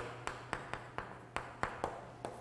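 Chalk tapping and scraping on a chalkboard during handwriting: a quick, uneven string of sharp clicks, about seven in two seconds.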